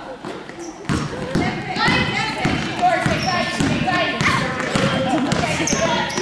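A basketball bouncing on the gym floor during play, a run of sharp knocks starting about a second in. Players and spectators are shouting over it in a reverberant gym.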